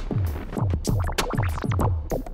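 Electronic background music with a steady drum-machine beat of about three low drum hits a second.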